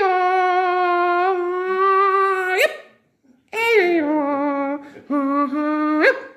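A man's voice imitating kulning, the Swedish high-pitched cattle call: three sustained high notes, the first long and ending in a quick upward flick, the second sliding down, the third held and flicking up at the end, with a short gap after the first.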